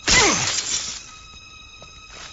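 Cartoon crash sound effect: a sudden loud shattering hit with a quickly falling tone, lasting under a second, as a body slams to the ground.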